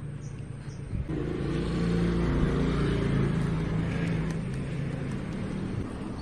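A motor vehicle driving past: its engine comes in about a second in, is loudest a second or two later, then slowly fades away.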